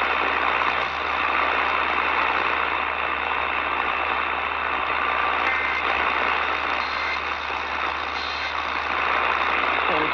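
Steady static hiss with a low hum from an Eton portable radio's speaker tuned to an AM station, with no clear programme coming through.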